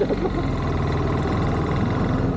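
Motorcycle engine running at low revs with a steady, even pulse as the bike rolls along, heard from the rider's camera.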